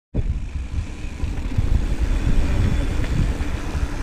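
Wind rumbling over the camera microphone as a mountain bike rolls downhill on asphalt, with tyre noise underneath.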